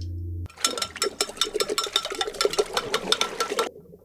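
Film soundtrack: a steady low drone cuts off about half a second in. A fast, dense clattering of sharp clicks follows over a faint steady tone, lasting about three seconds and stopping abruptly near the end.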